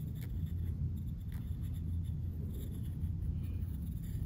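Graphite pencil scratching on paper in a spiral-bound notebook as letters are written, in short faint strokes over a steady low hum.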